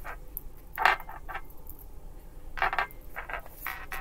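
Short taps and scrapes of tarot cards and small objects being handled on a tabletop, about six in all, the loudest about a second in.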